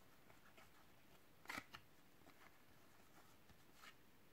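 Near silence, with faint brief rustles of glossy trading cards being slid and handled, the clearest about one and a half seconds in.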